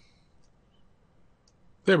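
Near silence with faint room tone, then a man's voice starts near the end.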